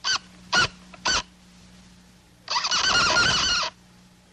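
Cartoon sound effects: three short squeaks that bend up and down in pitch in the first second, then a louder wavering, warbling squeal from about two and a half seconds in, lasting about a second.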